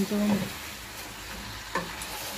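Chicken pieces sizzling in a pot as they are stirred with a wooden spoon, with one sharp knock of the spoon against the pot near the end.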